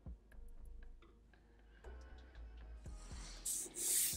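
Black felt-tip marker drawing on paper: a few short scratchy strokes starting about three seconds in. Before them, only faint background music with a light, quick ticking beat.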